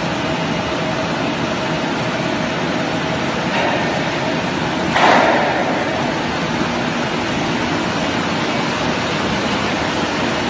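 Air-bubble vegetable washing line running with shredded potato: a steady, even mechanical and water noise, with a faint steady hum. A brief louder rush comes about five seconds in.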